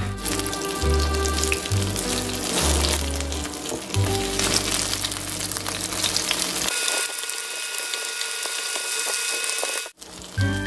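Background music, with a bass line that drops out about two-thirds of the way through, over the sizzle of egg-battered pollock fillets pan-frying in oil.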